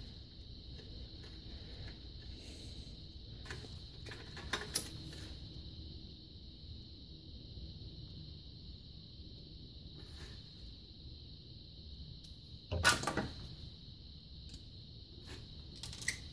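Quiet handling of small 3D-printer cartridge parts: a few faint clicks and taps over a steady faint high hiss, with one louder short clatter about three quarters of the way through.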